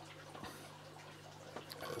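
Faint handling sounds of a cable being pushed through the tight rubber seal of a waterproof plug, with a couple of soft clicks, over a steady low hum.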